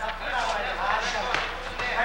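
A man's voice talking over the steady crowd noise of a boxing arena, with a few short sharp clicks.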